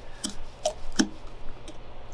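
Flathead screwdriver working a brass main jet into an LO206 kart carburetor: several light, separate metallic ticks, the clearest about a second in.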